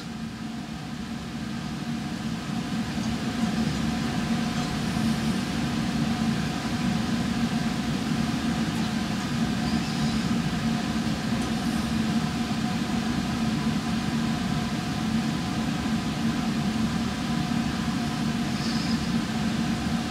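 Steady hum of laboratory ventilation, a fume hood's exhaust fan running, with several constant tones over an even whooshing noise.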